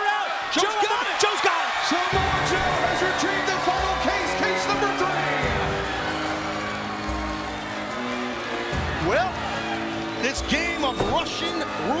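Arena crowd cheering and shouting. About two seconds in, a wrestler's theme music starts over the crowd with a heavy, steady bass line.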